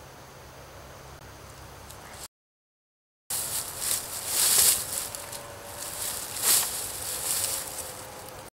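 Dry fallen leaves rustling and crunching under bodies shifting and lying down on the forest floor, after a brief cut to silence; two louder surges about two seconds apart.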